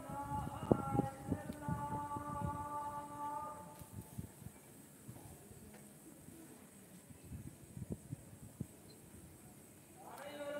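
A voice holding long, drawn-out notes for the first few seconds, then fading out. After that comes a quieter stretch with a few scattered knocks.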